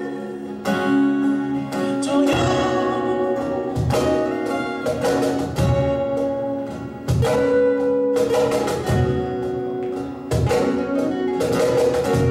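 Live acoustic band music: two acoustic guitars playing chords together, with a cajón beating out the rhythm in regular strikes.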